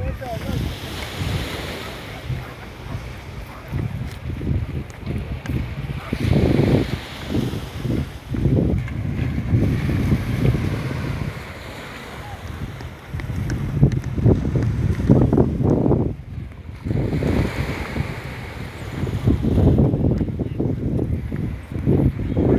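Wind buffeting the microphone in uneven gusts, with the wash of small waves on the shore behind it.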